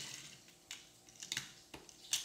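About four light clicks and taps of small toy trains and their parts being handled on a tabletop.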